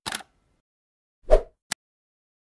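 Logo-animation sound effects: the tail of a swish at the start, then a hollow pop about a second and a quarter in, followed at once by a short sharp click.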